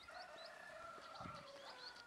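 Faint birdsong: short high chirps repeating a few times a second over a longer, lower drawn-out call.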